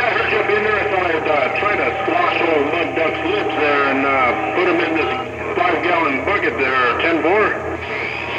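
Distant stations talking over an AM CB radio receiver, voices garbled and overlapping under static, with a steady whistle tone that stops about five seconds in and a low hum underneath.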